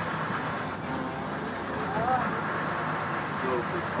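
International DT466 inline-six turbo diesel of a school bus running steadily at low revs, heard from inside the cab. Faint voices are heard in the background.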